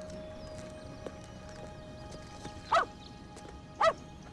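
Two short, loud, high yelps about a second apart, over faint background music that fades out.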